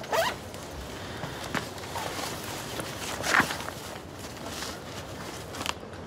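Clothing and belongings rustling as people get up from a table, with a short swish just after the start and another about three seconds in, over a steady background hiss.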